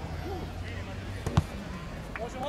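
A football kicked once: a single sharp impact about one and a half seconds in, with players' shouts in the background.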